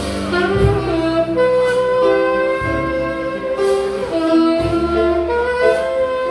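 Tenor saxophone playing long, held melody notes of a slow jazz ballad, backed by a bass walking low notes and occasional cymbal strokes from the drum kit.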